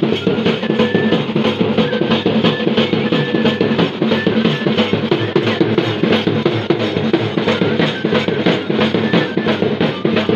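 Live Bhaderwahi wedding drumming: a large bass drum and a small metal-shelled drum beaten with sticks in a fast, even beat. A flute plays a high melody over the drums in short held phrases.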